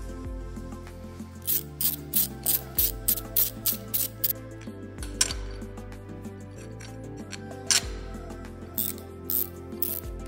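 Ratcheting wrench clicking as a bolt on the bracket is turned, a quick run of about three clicks a second and then a few scattered clicks near the end, over background music with steady bass notes.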